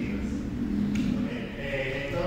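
A group of voices chanting or singing together in held notes during a voice workshop exercise.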